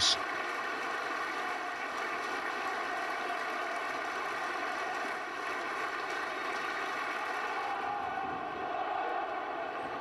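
Stadium crowd applauding, a steady, unbroken sound of thousands of hands clapping that runs on without a break.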